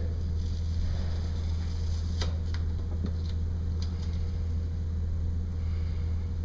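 Steady low room hum, with a few faint light clicks from about two seconds in as the moleskin is handled on the foot.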